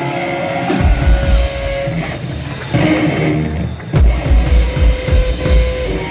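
Live rock band playing: electric guitar holding long notes over heavy drum-kit hits, which come in clusters about a second in, around three seconds and again from four seconds on.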